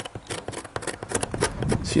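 Small knife blade scratching the lead came at a joint of a leaded-light panel in a quick run of short, irregular scrapes, cutting through the oxidised surface to bare, shiny lead so the joint will take solder.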